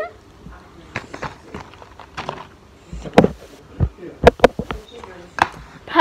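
About a dozen short clicks and taps at irregular spacing, from a phone being handled and tapped while a photo is taken.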